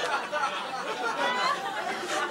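Audience laughter, a continuous mass of many overlapping voices.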